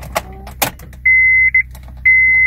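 Ignition key turned to the on position with a couple of clicks, then a Honda's dashboard warning chime: a steady high beep about half a second long, repeating about once a second, as the instrument cluster comes on.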